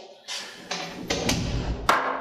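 A glass bowl set down on a wooden table with one sharp knock near the end, after a second or so of handling and shuffling noise.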